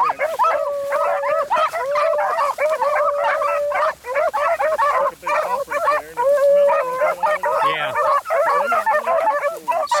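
A pack of beagles baying in full cry on a rabbit's trail: many overlapping long bawls mixed with shorter choppy barks, running without a break.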